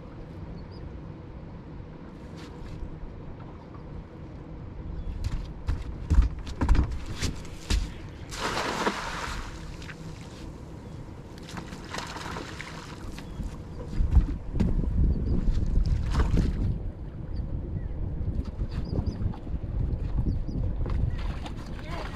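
Monofilament cast net handled, thrown and hauled back from the deck of a skiff: rustling mesh and clicking lead weights, a splash about midway as the net hits the water, then rope and wet netting pulled back aboard.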